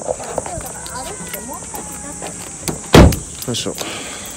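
A single loud slam about three seconds in, typical of a car door being shut, over faint background voices and a steady high insect drone.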